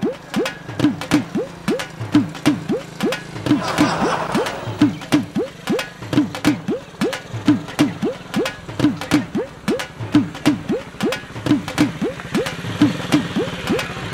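Comic background music loop: a quick drum beat with short rising whooping notes, two or three a second, plus a brief hiss about four seconds in.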